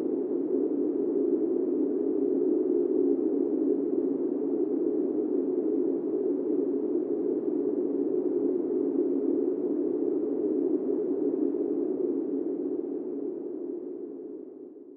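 A steady low drone, likely a sound effect laid over the scene, holding level and fading away near the end.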